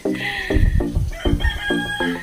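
A rooster crowing twice, the second crow longer, over background music with a steady beat.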